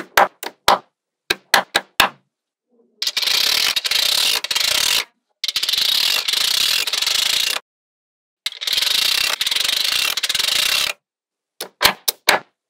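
Small magnetic balls clicking sharply as pieces are snapped onto a magnetic-ball structure, then three long runs of rapid ratchet-like rattling as a row of balls is pushed over the bumpy ball surface with a clear plastic strip. Sharp clicks again near the end as another block is set down.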